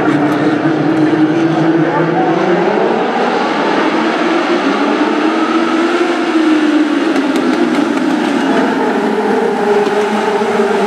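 A pack of Legends race cars running together through a turn, their motorcycle-derived engines making a dense, overlapping drone. The engine pitch rises partway through and falls back near the end as the cars go through the corner.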